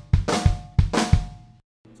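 Drum kit playing the 'splat boom' fill: a flammed snare hit followed by bass drum strokes, played several times in quick succession. The playing stops about a second and a half in.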